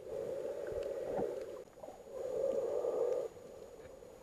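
A snorkeler breathing through a snorkel, heard muffled through an underwater camera: two long breaths in a row with a short pause between.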